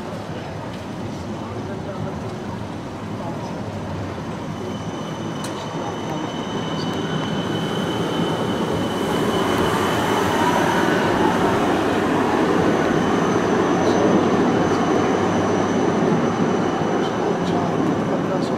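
Electric city tram running along street rails and passing close by: a rumble that builds as it approaches and is loudest through the middle and latter part, with a thin high whine over it from about five seconds in.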